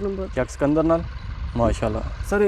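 Voices speaking in short phrases over a steady low rumble.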